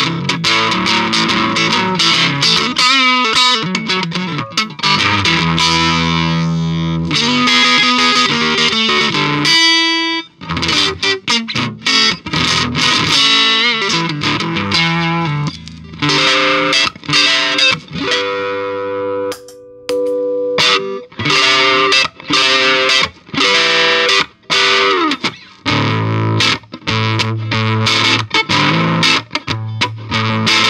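Electric guitar played through an Electro-Harmonix Hot Tubes overdrive pedal, alternating picked notes and held, ringing chords with overdrive distortion. In the last few seconds the tone changes to a Pigtronix Fat Drive overdrive, with heavier low notes.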